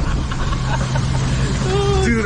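Water-coaster boat being driven along its track: a steady low mechanical hum over a constant rushing noise. A rider laughs at the start.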